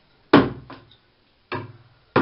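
Sharp impacts as a hand-made wooden lure is put into bathtub water and pulled along on a rod: a loud hit about a third of a second in, a lighter one just after, and another near the end.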